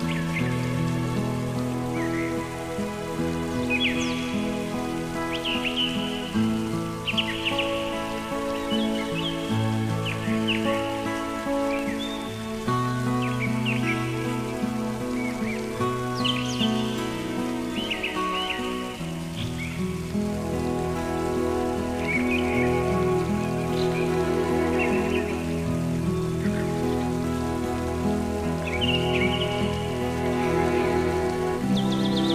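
Slow, gentle instrumental music of held chords that change every second or two, over a nature recording of birds chirping and a steady patter of rain.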